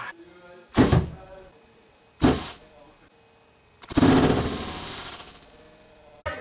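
Rumbling noise hitting the camera microphone, as from handling or rubbing: two short bursts about a second and a half apart, then a longer, louder burst lasting over a second. Faint voices can be heard in between.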